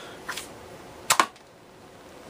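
Clicks from handling a plastic toy foam-dart bow: a light click early, then one sharp, louder plastic click about a second in.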